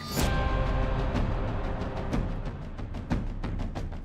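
Dramatic music sting led by timpani, coming in suddenly and slowly fading away.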